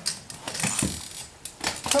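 A few irregular light metallic clinks and knocks from a painter stepping along on drywall stilts while carrying a paint can.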